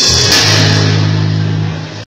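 Rock band playing, with drums, cymbals and guitar on a held chord that fades out near the end.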